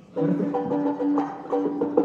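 Violin playing a short Spanish-style phrase of several quick notes over a held note, starting just after the beginning.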